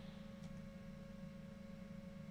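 Faint room tone: a steady low hum with a thin, steady whine above it.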